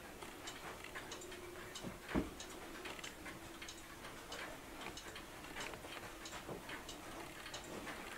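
Mechanical clock ticking with a quick, even beat, with one louder thump about two seconds in.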